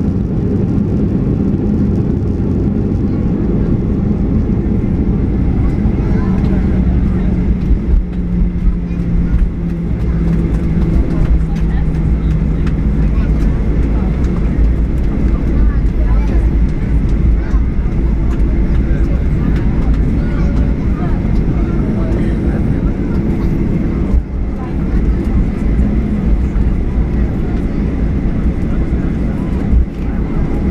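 Inside the cabin of a Boeing 737-800 rolling along the runway after landing: a steady, loud engine and airframe rumble, with a low engine tone that drops in pitch and fades out about ten to thirteen seconds in.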